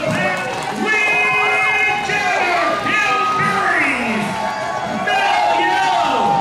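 Crowd of spectators cheering and shouting, several voices at once, over music.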